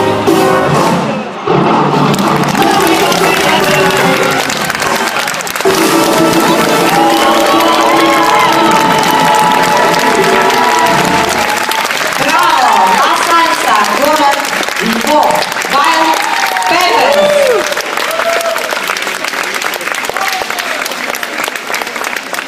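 Salsa music playing, ending about halfway through. Then an audience applauds, with shouts and whoops that die down toward the end.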